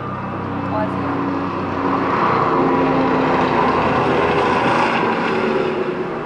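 A loud passing vehicle's noise that swells about two seconds in, holds, then starts to fade near the end.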